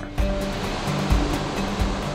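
Steady rush of churning whitewater from a hydroelectric dam's spillway outflow, with background music underneath.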